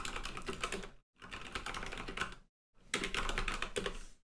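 Typing on a computer keyboard: three quick runs of keystrokes separated by short pauses, as shell commands are entered.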